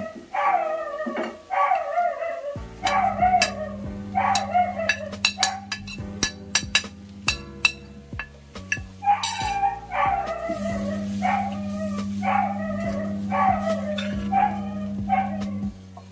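A dog barking repeatedly, short falling barks about once or twice a second, over background music with a steady low tone. In the middle the barking stops for a few seconds and sharp clicks and taps are heard.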